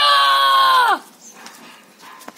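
A single loud, high-pitched cry held for about a second, its pitch dropping as it ends.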